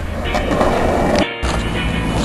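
Skateboard wheels rolling on concrete, with a short break just past a second in where the footage cuts to another rider.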